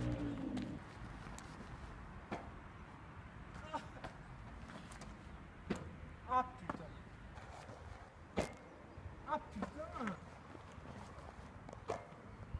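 Faint outdoor background with a few short, distant voice fragments, mostly in the second half, and a handful of single sharp knocks spread through it.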